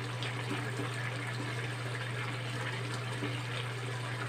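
Jackfruit in coconut milk simmering and bubbling steadily in a metal pan as the sauce cooks down, stirred with a wooden spatula, over a steady low hum.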